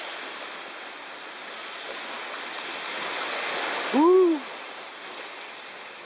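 Steady rushing of sea surf washing on the shore, with one short vocal sound from a person about four seconds in that rises and falls in pitch.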